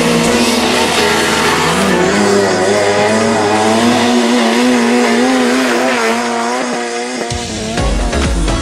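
Fiat Uno rally car's engine revving hard and rising and falling in pitch as the car slides through a dirt gymkhana course, with background music under it.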